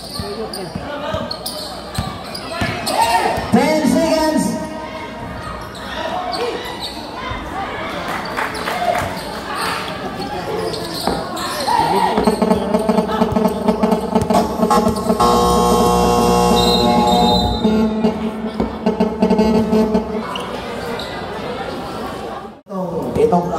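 A basketball bouncing on a concrete court amid shouting voices. About twelve seconds in, a loud held sound with several steady pitches starts and lasts about eight seconds.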